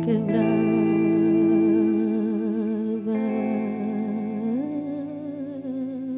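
A woman's voice singing long held notes with vibrato over a plucked acoustic guitar. The melody steps up about four and a half seconds in.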